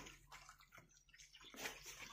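Near silence, with a few faint soft clicks and a faint soft noise about a second and a half in.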